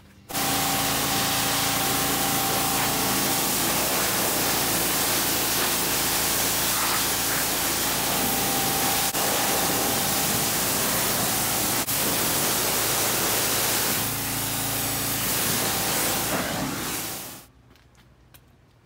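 Pressure washer spraying water onto a side-by-side's plastic body panels: a loud, steady hiss with a constant hum underneath, rinsing off the degreasing soap. It stops suddenly near the end.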